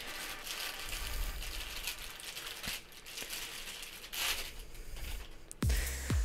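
Clear plastic bag crinkling and rustling as a coiled cable is unwrapped from it by hand, with a louder patch of rustling about four seconds in.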